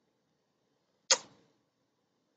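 A single sharp click about a second in, dying away within half a second.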